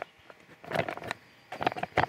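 A camping-meal food pouch rustling and crinkling as it is handled. The sound comes in two short spells of small crackles, about half a second in and again near the end.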